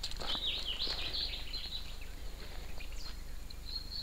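Small birds chirping and twittering: a quick run of short, rising-and-falling high calls in the first second and a half, then fainter scattered calls over a steady faint high hiss.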